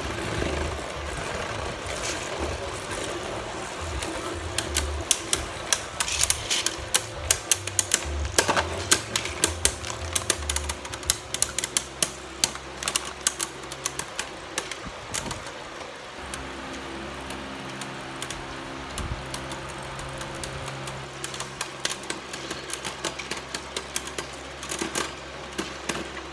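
Two Beyblade Burst spinning tops whirring in a clear plastic stadium, clacking against each other and the stadium wall in rapid, frequent collisions for about the first half, then spinning more steadily with only occasional clicks, both tops still spinning.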